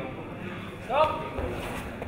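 A man's short, loud shout about a second in, rising in pitch and then holding, over a background of voices in a large sports hall.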